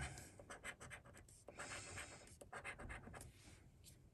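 Coin scratching the coating off a lottery scratchcard: faint, short, irregular scraping strokes.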